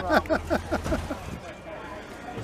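A man laughs in quick bursts over the low, steady idle of a 1970 Chrysler 300's 440 TNT V8. The engine dies a little over a second in as the ignition key is turned off.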